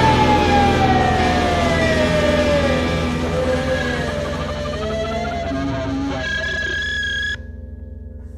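The end of an alternative rock song. Over the full band, a long sustained tone falls slowly in pitch, and held notes ring on after it. A little past seven seconds the band cuts off suddenly, leaving a quieter low drone.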